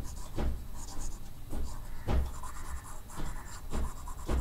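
Stylus strokes on a drawing tablet: a series of short scratches and taps, about two a second and irregular, as working on the screen is rubbed out and rewritten.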